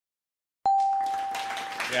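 Game-show answer-reveal sound effect: a sudden bell-like ding about two-thirds of a second in, holding one steady tone for about a second as it fades, marking an answer flipping up on the board.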